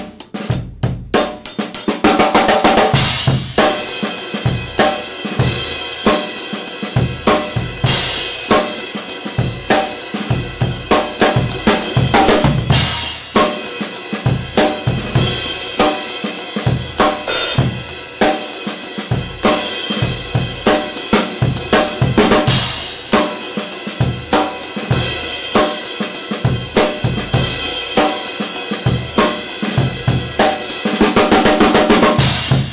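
Drum kit played in a steady groove, the basic beginner pattern built on with variations: bass drum, snare, a tom and cymbal strokes in an even rhythm. The playing is lighter for the first couple of seconds, then settles into the full, loud groove.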